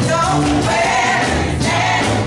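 Women's gospel vocal group singing together into microphones, with sustained held notes over an instrumental accompaniment with a steady bass line.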